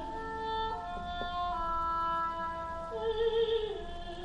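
Oboe playing a slow line of steady held notes with harp accompaniment in a chamber piece. A mezzo-soprano voice with vibrato comes back in near the end.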